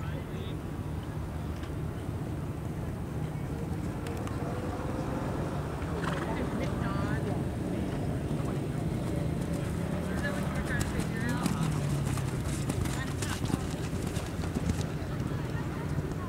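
Horse cantering on sandy arena footing, its hoofbeats clearest as a run of sharp thuds in the second half, with faint indistinct voices in the background.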